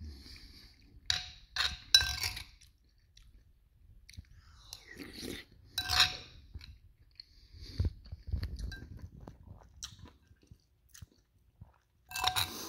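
Eating sounds: a metal spoon clinking and scraping in a glazed ceramic bowl of soup, with chewing between. There are a few sharp clinks about a second in and again around the middle.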